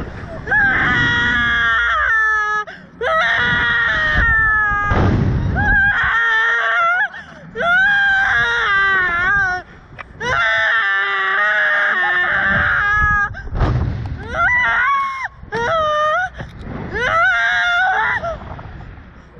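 Two women screaming on a Slingshot reverse-bungee ride: a string of long, high-pitched screams of a second or two each, with short breaks between. Wind buffets the microphone a few times.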